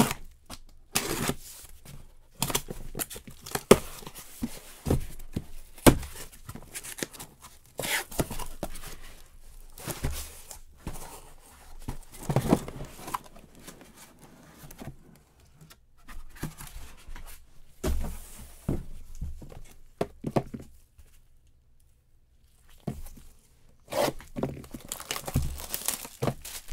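A cardboard shipping case being opened by hand: packing tape ripped, cardboard flaps and the boxes inside scraped and knocked about in irregular bursts. Near the end, plastic shrink-wrap is torn and crinkled off a hobby box.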